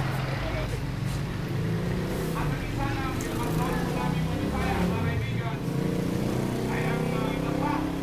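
A man talking in short phrases over a steady low drone of street traffic.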